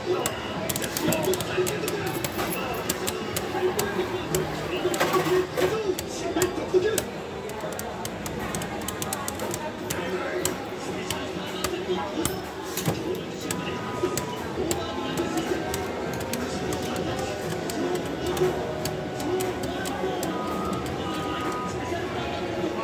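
Two Beyblade Burst tops spinning on the floor of a clear plastic stadium, a steady busy rattle of rapid small clicks as they spin and knock against each other. Voices and music murmur underneath.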